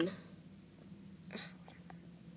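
A voice stops at the very start, then near-quiet room tone. About one and a half seconds in there is a brief soft hiss, like a breath or whisper, followed by a few faint ticks.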